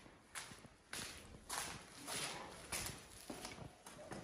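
Footsteps of a person walking across a hard floor and up stone stair treads, about seven steps at an even pace.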